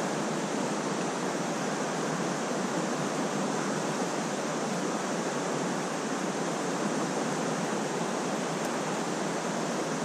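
Steady rush of a shallow, fast-flowing trout stream's current, an even, unbroken wash of water noise.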